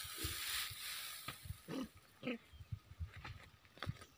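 Dry straw rustling as a harvested straw bundle is handled, fading after the first second, with low thumps throughout. About two seconds in come two short rising calls of unclear source.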